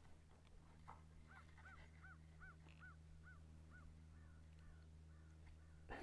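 A bird calling faintly: a quick series of about eight short, evenly spaced notes that rise and fall in pitch, growing fainter toward the end, over a low steady hum.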